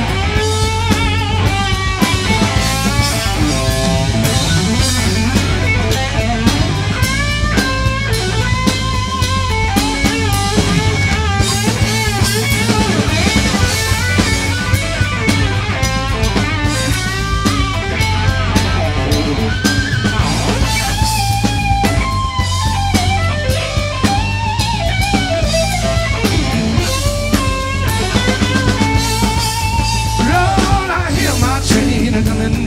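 Live electric blues-rock band playing an instrumental break: a lead guitar solo of bent, wavering notes over drum kit and bass, with no singing.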